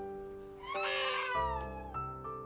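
A baby crying, one wavering wail about a second in, over soft background music with long held notes.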